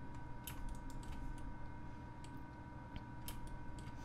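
Scattered, irregular clicks of a computer keyboard and mouse being worked.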